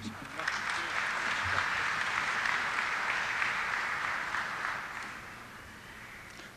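An auditorium audience applauding at the end of a speech: steady clapping that starts about half a second in and dies away near the end.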